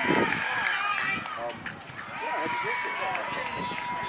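Indistinct shouting and chatter from players and spectators across a baseball field, several voices overlapping, with one long drawn-out call held for almost two seconds in the second half.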